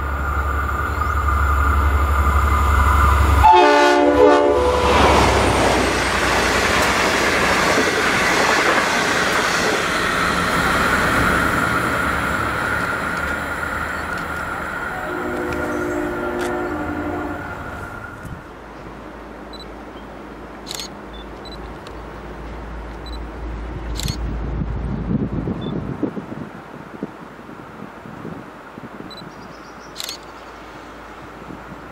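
Diesel locomotive sounding its multi-note horn, loudest a few seconds in, then a passenger train passing in a long rush of engine and wheel noise that slowly fades, with a second, softer horn blast partway through. After a sudden drop in level, a quieter rumble of another train approaching, with a few sharp clicks.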